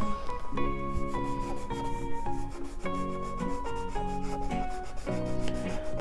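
Felt-tip marker rubbing and scratching across paper as it colours, over soft background music with a simple stepping melody.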